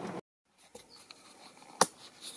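Steady sound cutting off suddenly to dead silence, then quiet small-room tone with a few faint ticks and one loud, sharp click near the end.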